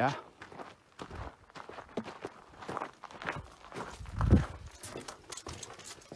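Footsteps crunching on gravelly dirt in an irregular walking rhythm, with a louder low thump on the microphone a little past four seconds in.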